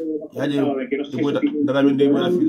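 A man speaking, in talk that the recogniser did not write down.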